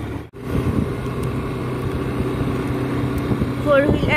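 Steady engine and road noise of a moving motorized two-wheeler, heard from the rider's seat, with a low hum throughout. A voice starts near the end.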